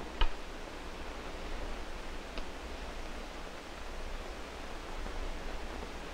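Steady hiss and low hum of an old 16 mm film soundtrack, with a short click just after the start and a faint tick about two and a half seconds in.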